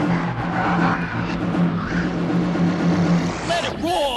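Hardcore techno from a DJ mix: a distorted, rapidly pulsing bass-heavy loop. Near the end a warbling synth line starts, swooping down and up over and over.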